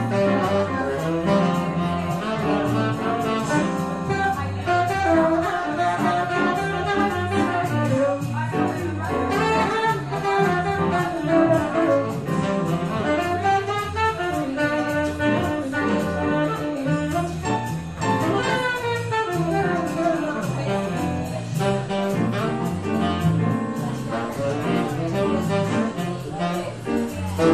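Live jazz: a saxophone playing a melodic line over keyboard accompaniment.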